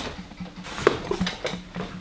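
A handheld camera carried through the flat: a few light clicks and knocks of handling and footsteps on a tiled floor, the loudest a little under a second in, over a faint steady low hum.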